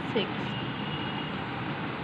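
A woman's voice says one word, then steady background noise with a faint high tone for about a second.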